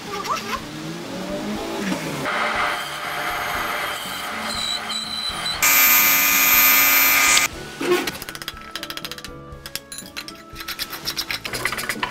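Background music over workshop sounds. About six seconds in, a spinning sanding wheel grinds against a wooden barrel head for just under two seconds, the loudest sound here. It is followed by a run of quick clicks and knocks.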